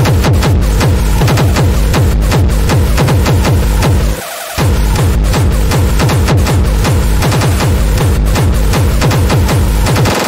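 Fast, hard techno playing in a DJ mix: a steady kick drum and heavy bass under dense, rapid high percussion. The kick and bass drop out for about half a second a little after four seconds in, then come back.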